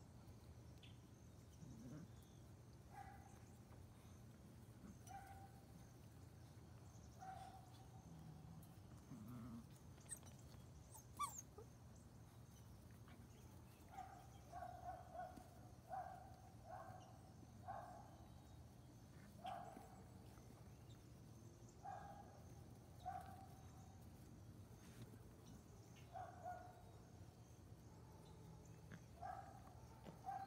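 Eight-week-old standard poodle puppies making faint, short yips and whimpers as they wrestle in play. The calls come one by one at first, then in a quicker run of about a dozen through the middle, and a few more near the end.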